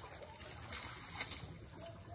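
Water lapping against a small boat's hull over a steady low rumble, with two brief splashy knocks, about a third and two-thirds of the way through.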